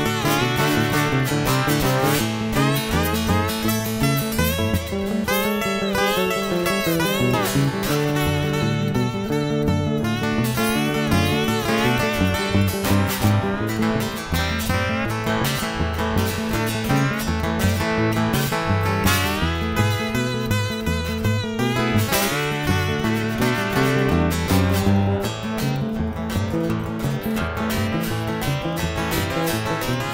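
Instrumental break of a blues song on two guitars: a guitar played flat on the lap with a slide carries the lead in wavering, gliding notes over chords strummed on an electric hollow-body guitar.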